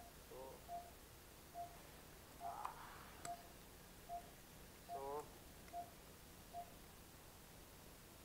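Faint, evenly spaced single-pitch beeps, a little more than one a second, from an operating-theatre patient monitor's pulse tone, each beep marking a heartbeat. Brief snatches of a voice and a short rustle with a click fall between the beeps.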